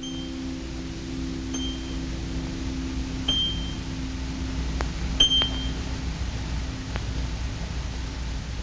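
Highest strings of a concert harp plucked: four short, very high pings a second or two apart, the last two the loudest, over a steady low hum.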